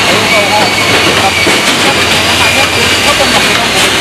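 Loud, steady rushing construction-site noise, with a man's voice faint beneath it.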